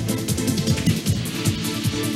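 Electronic theme music with a fast, steady beat of ticking percussion and short, deep bass notes that slide down in pitch.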